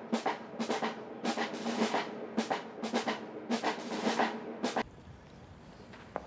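Parade drums beating a marching cadence, a strike roughly every half second over a held low note, cutting off about five seconds in and leaving quiet open-air ambience.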